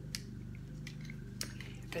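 Faint clicks and light rustling of small plastic gadgets being handled in a fabric electronics organizer pouch: a few separate ticks over a steady low hum.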